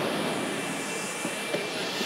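Jet airliner turbine noise on the apron: a steady rushing roar with a faint high whine running through it.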